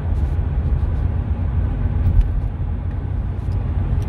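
Car driving on a motorway, heard from inside the cabin: a steady low rumble of tyre and engine noise.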